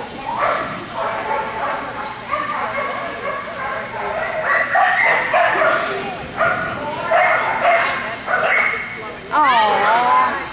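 Dogs barking and yipping in repeated short calls, more often in the second half, with one long wavering yelp near the end.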